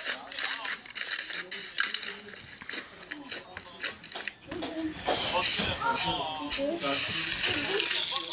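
Shiny slime being squeezed and kneaded by hand, giving a dense, irregular crackling and popping. Indistinct voices join in the second half.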